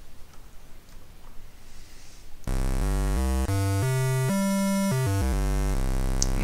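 Patchblocks mini-synthesizer playing a buzzy square wave, shaped with four of its eight faders up and four down. It starts about two and a half seconds in and runs through about a dozen notes played on the keyboard without gaps, stepping up and down in pitch.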